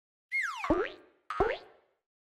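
Two springy cartoon boing sound effects with sliding pitch, the first about a third of a second in and the second about a second later: the sound sting of the LeapFrog logo intro.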